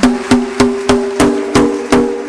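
Drum solo on a drum kit: evenly spaced strokes about three and a half a second on pitched drums, each with a sharp attack and a short ring, the pitches stepping up in the second half.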